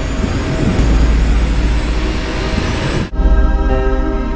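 Film soundtrack: a loud, dense low rumble that cuts off suddenly about three seconds in, giving way to music with sustained, held chords.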